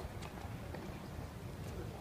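Steady low rumble of outdoor city background noise, with a few faint light knocks scattered through it.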